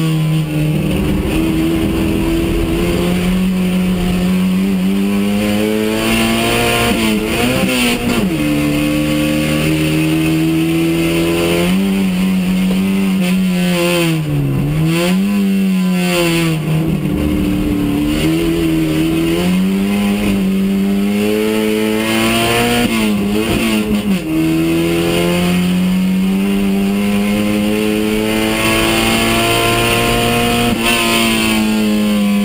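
Race car engine heard from inside the stripped cabin at racing speed, its note climbing steadily and then dropping sharply several times as the driver shifts gears or lifts off.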